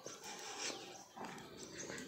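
A dog barking faintly.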